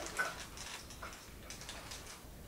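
Faint rustling and a few small, irregular clicks of handling as a ball-jointed doll is fetched and picked up.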